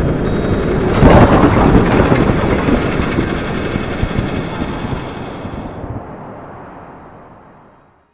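Cinematic logo-intro sound design: a dense, rumbling swell with its loudest hit about a second in and thin chiming tones above it early on, then fading out steadily over several seconds to nothing.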